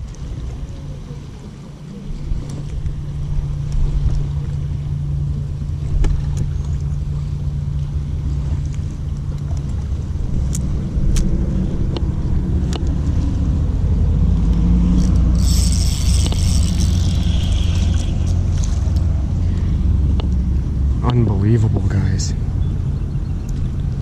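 Low, steady rumble of wind and water noise around a small fishing boat, with a steady low hum through the first half and a few sharp clicks. A brief hiss comes about fifteen seconds in.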